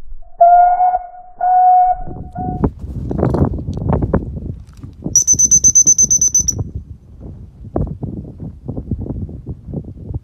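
Recall whistle blasts: three loud steady blasts near the start, two long and one short. About five seconds in comes a much higher, shrill whistle held for about a second and a half with a fluttering pulse. Rough rumbling and knocks on the microphone fill the gaps.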